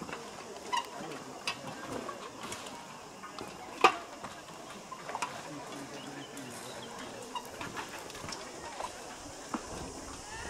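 Irregular knocks and clicks from footsteps and the swaying rope-and-plank canopy walkway, with one sharper knock about four seconds in. Faint voices in the background.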